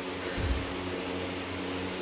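Steady low hum, with a soft low thump about half a second in.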